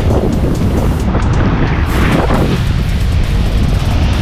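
Small waves washing up over wet sand at the water's edge, with wind buffeting the microphone as a heavy low rumble. Music plays underneath.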